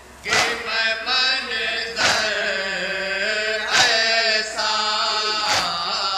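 A group of men chanting an Urdu noha (Shia lament) in unison through a microphone. Four loud, evenly spaced strokes of collective chest-beating (matam) come about every second and a half to two seconds, keeping the beat.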